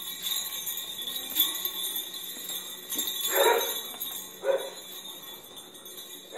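Small jingle bells on a dog's collar jingling continuously as the dog moves about, with two short, louder, lower sounds about three and a half and four and a half seconds in.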